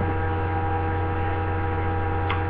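Steady electrical hum: a low drone with several thin, constant higher tones above it, unchanging throughout.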